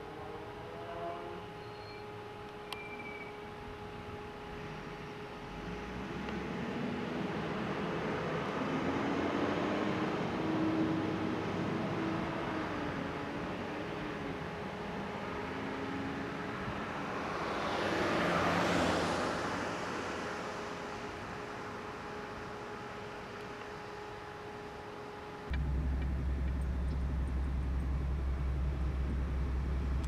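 Road traffic: vehicle noise that builds and then fades, with one vehicle passing loudest a little past the middle. A faint steady high hum runs underneath and stops suddenly near the end, where a steady low rumble takes over.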